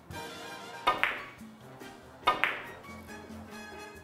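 Two sharp clacks from a carom billiards shot, about a second and a half apart, each ringing briefly, over background music.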